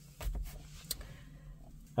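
Faint handling noise as a handheld camera is moved: a soft low thump with rustling about a quarter second in, then a small click just before the middle.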